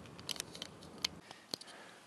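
Faint handling noise: a few scattered light clicks and ticks as the camera is moved, over a faint low hum that stops a little past halfway.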